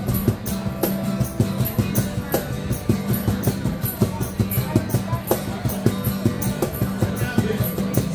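Acoustic guitar strumming chords over a steady, even cajon-and-jingle percussion beat, with no words.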